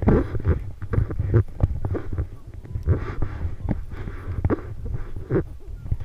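Repeated low thumps and rubbing from a camera riding on a swaying elephant's saddle, with a breathy huff near the end.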